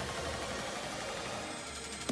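A steady low hum with no other events.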